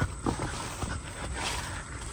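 Footsteps on a grassy path with plants brushing past, a few short irregular thuds, the strongest at the very start.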